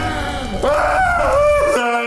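A man's long, loud yell, starting about half a second in, its pitch wavering and then falling before it cuts off; a short lower held note follows near the end.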